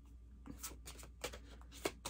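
Tarot cards being handled: a quick, faint run of short card flicks and taps, starting about half a second in.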